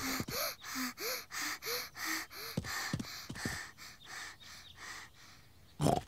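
A cartoon child's voice panting quickly, about four breaths a second with little squeaky catches in the voice, out of breath from running; the panting tails off near the end.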